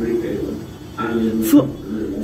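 Speech only: a child reading aloud haltingly, a drawn-out hesitant voice sound and then the word 'four'.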